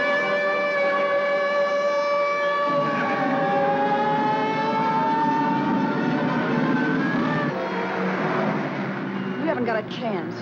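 A police siren wailing over cars racing in a chase: a held tone for the first few seconds, then a lower pitch that slowly rises, with engine and road rumble underneath.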